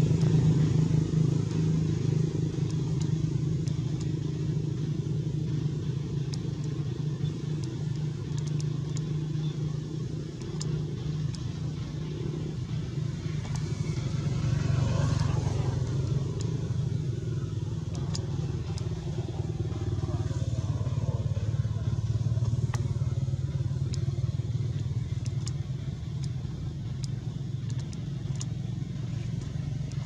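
A steady low drone of a running motor, briefly louder about halfway through, with faint scattered ticks.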